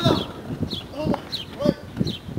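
A person's voice making pitched calls that rise and fall about twice a second, with no clear words.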